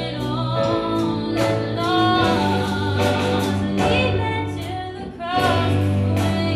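A contemporary worship song played live by a small church band, with a woman singing lead over held bass notes and a steady beat.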